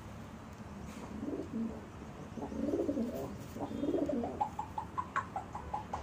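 African grey parrot making low, soft cooing mutters, then breaking into a run of short, quick chirps, about four a second, near the end.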